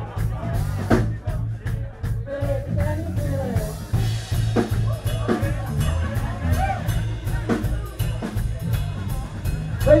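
Live blues-rock band playing: drum kit and bass keeping a steady beat under electric guitar lines.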